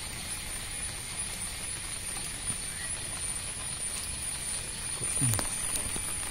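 Steady background hiss with a faint crackle, a thin high whine held throughout, and a few light clicks near the end.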